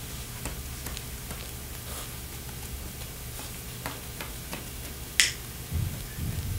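Cloth wiping marker writing off a glass lightboard: faint scattered rubs and ticks, with one sharp click about five seconds in.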